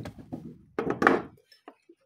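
Light knocks and clinks from hands handling a gift tray and its clear plastic cover, with a louder rattle about a second in.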